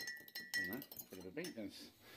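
A metal fork clinking against a bowl a few times as an egg is beaten, each tap ringing briefly. The taps stop in the first half-second, and a faint murmur of speech follows.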